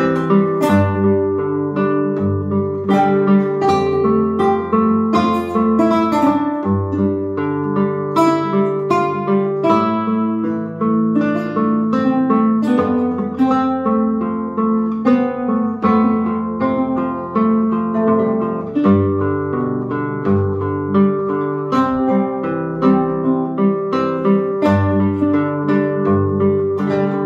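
Two classical guitars played together as a fingerpicked duet: a continuous flow of plucked melody notes over held bass notes.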